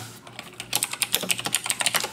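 Computer keyboard keys clicking in a quick run of typing, about ten keystrokes a second, starting about half a second in.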